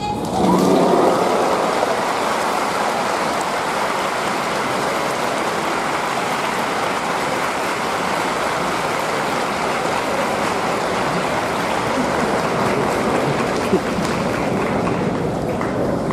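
Audience applause in a gymnasium, breaking out suddenly and holding steady, easing slightly near the end.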